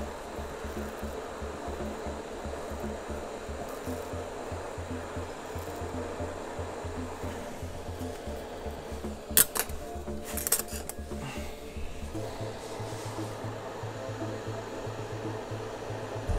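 Hot-air rework gun blowing steadily while heating a memory chip on an engine control unit's circuit board, with a few sharp clicks a little past the middle.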